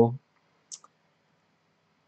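A man's speech breaks off just after the start, then a faint, short click about two-thirds of a second in, with a still fainter tick right after it; otherwise a quiet pause.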